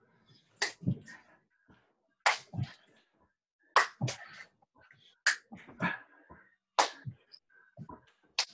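Plyometric push-ups on a floor, repeated five times about every second and a half. Each rep makes a sharp slap followed by a duller thump.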